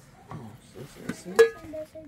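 An aluminium pot lid is lifted off a metal pot and clanks against it once, sharply, about one and a half seconds in, with a short metallic ring. Softer scraping and handling of the pot come before the clank.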